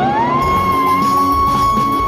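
A female singer sliding up into a long, steadily held high note in a wordless operatic vocalise, over a backing track.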